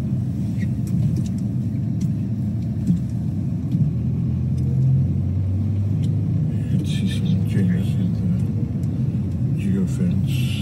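Car engine and road noise heard from inside the cabin while driving slowly: a steady low rumble, its engine note dipping slightly about halfway through.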